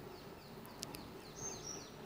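Faint background of a small bird chirping in short falling notes a few times a second, with a single click just under a second in.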